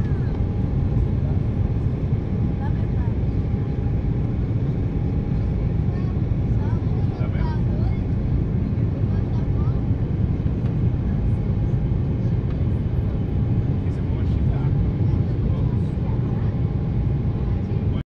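Steady cabin roar of an Embraer 195 climbing after take-off: its two GE CF34 turbofans and the airflow over the fuselage make a heavy, even rumble with a faint steady whine on top.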